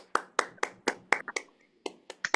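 Scattered hand claps from participants unmuted on a video call, several sharp claps a second, irregularly spaced, with a short pause just before the end.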